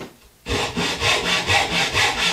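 Hand backsaw (dovetail saw) cutting into the end of a clamped wooden board, in quick even strokes about four a second that start about half a second in.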